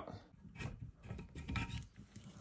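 Faint clicks and scrapes of a hand turning the plastic coupling nut of a toilet's water supply line under the tank, loosening it.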